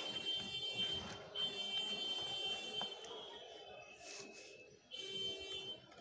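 Sheets of drawing paper rustling as they are handled, under a high-pitched steady tone that comes and goes in stretches of one to two seconds.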